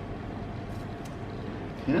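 Steady background hiss and hum of the room, with a faint tick or two about a second in; squeezing the orange peel itself is not heard.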